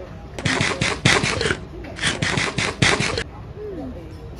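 Breathy laughter in two quick bouts of about a second each, several short puffs of breath a second.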